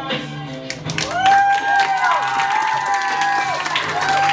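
A room of students clapping and cheering, starting about a second in, over recorded backing music.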